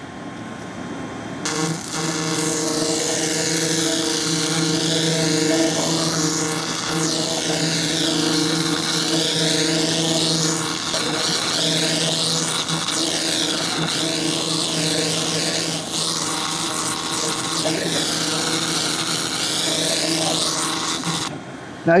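SFX BLC-2000 2000 W fiber laser cleaner firing, ablating rust off a steel sign: a steady buzzing hum with a hiss, its tone wavering as the scanning head is swept back and forth. It switches on about a second and a half in and cuts off abruptly just before the end.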